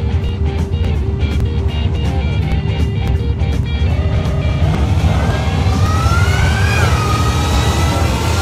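Background music with a steady beat. About halfway through, a Ford Lightning pickup with an E4OD/4R100 transbrake automatic launches down a drag strip: its engine note climbs steadily, dips once and climbs again.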